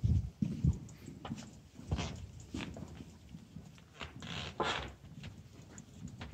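Handling noise and footsteps from a handheld camera being walked through a room. There are low thumps in the first second, scattered light knocks, and a short hissing rustle about four and a half seconds in.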